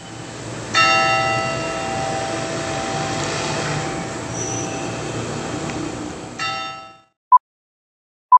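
Church bell in the cathedral's bell tower, struck about a second in and ringing on as a cluster of steady tones that slowly die away, over outdoor background noise. It is struck again near the end, and the sound cuts off suddenly. A single short electronic beep from a film-countdown leader follows.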